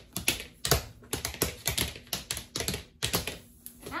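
Tap shoes struck against a hard dance board by hand, giving a quick, uneven run of sharp metallic clicks, several a second.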